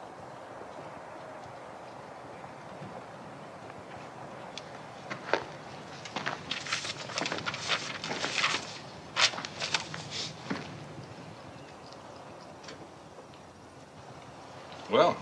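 Pages of a book being handled and turned: a run of crisp paper rustles and a few light knocks lasting about five seconds in the middle, over a quiet, steady background.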